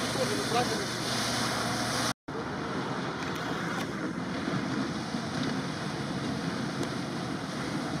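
4x4s driving through a muddy, water-filled track: a steady rush of splashing water and engine noise, with wind on the microphone. The sound cuts out for a moment about two seconds in.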